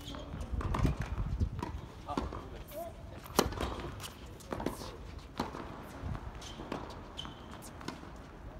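A tennis ball bouncing on the hard court and struck by rackets in a rally: a series of sharp knocks, the loudest about three and a half seconds in, with footsteps on the court.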